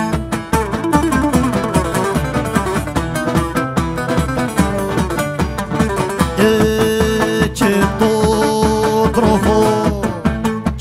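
Cretan folk music played live: two laouta (long-necked lutes) picking a fast melody over a steady daouli drum beat. Longer held notes join in over the last few seconds.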